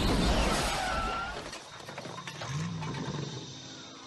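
Produced outro sound effect dying away: a loud, noisy, crash-like sound fades steadily, with a short low rising-then-falling growl-like tone about two and a half seconds in and several falling whistle-like tones near the end.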